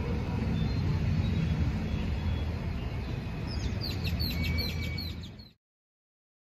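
Outdoor ambience with a steady low rumble, then a bird calling a rapid run of about eight high chirps, about four a second, over the last two seconds before the sound cuts off suddenly.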